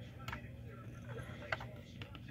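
A few faint clicks and taps from a die-cast model car being handled and picked up, over a steady low hum.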